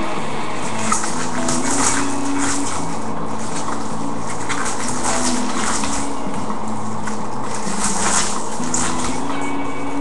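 Foil trading-card pack wrappers crackling and tearing again and again as packs are ripped open, over steady background music.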